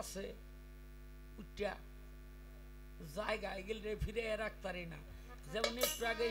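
Steady electrical mains hum through a stage microphone and sound system. A man's voice makes a brief sound about a second and a half in, then speaks again from about halfway through.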